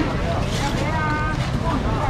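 Busy market ambience: voices in the background over a steady low rumble, with one drawn-out call about a second in.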